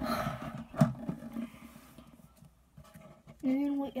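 Children's voices making playful vocal noises: a breathy, rasping sound with a knock in the first second, a short lull, then a held steady voice near the end.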